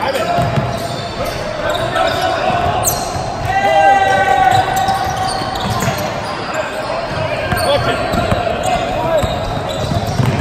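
Basketball bouncing on a hardwood gym floor and sneakers squeaking, over spectators' and players' voices echoing in a large hall. It is loudest in a drawn-out squeal or call about three and a half seconds in.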